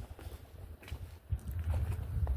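Footsteps on gravel: several uneven steps with a few short clicks.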